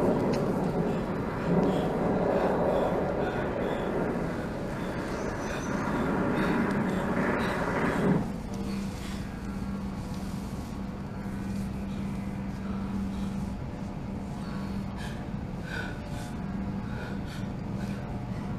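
Soundtrack of a dance film: a dense, rumbling noise that cuts off suddenly about eight seconds in. After it, a quieter, steady low hum comes and goes.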